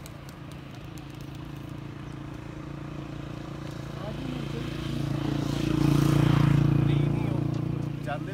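A motor vehicle passing on the road, its steady engine hum growing louder to a peak about six seconds in and then fading.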